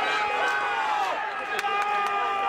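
Several young players' voices shouting and yelling at once on a football pitch, overlapping one another, as in the celebration of a just-scored goal. A couple of sharp clicks come near the end.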